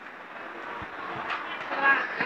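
Busy exhibition-hall ambience: a steady background wash of noise with faint, indistinct voices of other people, some clearer in the second half.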